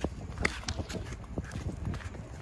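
Footsteps on a paved footpath: a run of short, irregular steps, the sharpest about half a second in.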